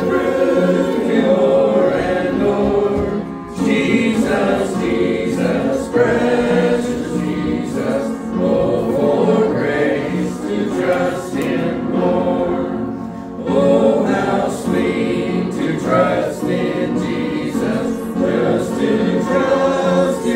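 A congregation of mixed voices singing a gospel hymn together, in long held notes.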